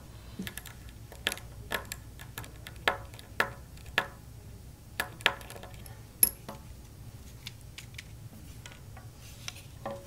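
Light, irregular metallic clicks and taps of a mini screwdriver and tiny screws on a small circuit-board assembly as the screws are backed out and handled: about a dozen sharp ticks, the sharpest about six seconds in.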